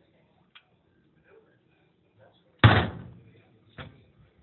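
A single loud bang or slam about two and a half seconds in that dies away over about half a second, followed by a softer knock near the end.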